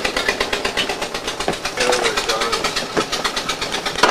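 A car engine idling with a fast, even pulse. Faint voices can be heard about halfway through.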